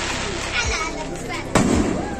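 Aerial fireworks bursting overhead, with a sharp loud bang about a second and a half in and a duller thump before it. People's voices are mixed in.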